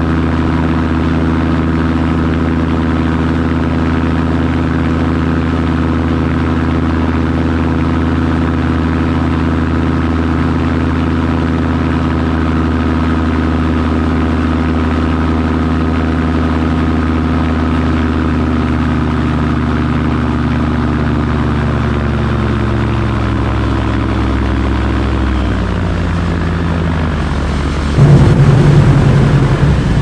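Light amphibious seaplane's propeller engine idling on the water in a steady drone, its pitch sagging slightly in the last third. Near the end it turns suddenly louder, with a rush of water spraying off the hull.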